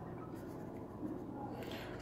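A pen writing on paper: a few faint, short strokes.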